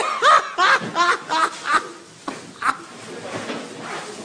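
A person laughing in short rapid bursts, dying away about halfway through into a few faint chuckles.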